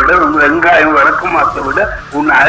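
A voice, loud and continuous, heard clearly but not recognised as words.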